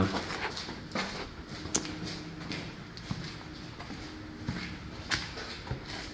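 A few scattered sharp clicks and knocks, the clearest about two seconds in and about five seconds in, over a faint steady hum.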